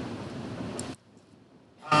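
Steady room noise from the hall for about a second, then the sound drops suddenly to near silence, as if gated or cut, until a man's voice resumes at the very end.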